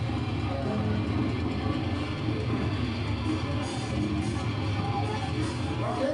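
Live band music with electric guitar, playing steadily throughout.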